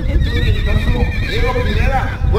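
A loud, quavering horse-like whinny lasting about a second, followed by a voice.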